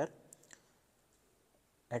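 Two faint short clicks about a third and half a second in, then near-silent room tone until a spoken word starts at the very end.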